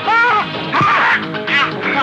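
Film background music for a fight, with three short, pitched cries over it, at the start, just before a second in and about one and a half seconds in.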